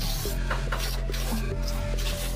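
Background music with a scraping sound in short strokes over it, typical of hand tool work on a wall surface.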